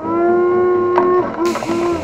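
A long, held "aaah" yell as someone goes under a waterpark water spout. About one and a half seconds in, falling water splashes down over them and carries on to the end.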